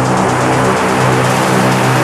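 Minimal techno in a breakdown: layered, sustained synth tones with a faint, fast ticking up high and no kick drum.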